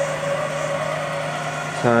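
Stepper motors of a CNC router driving the gantry and Z axis along their ball screws during a traverse, a steady motor whine.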